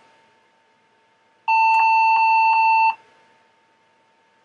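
Compaq iPAQ PC's internal speaker giving one steady beep about a second and a half long as the machine goes through its power-on self-test.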